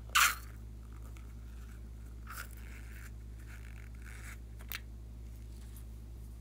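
A short, loud wet squirt as slime is squeezed out of a rubber balloon into a bowl of slime, followed by faint squishing and a small click.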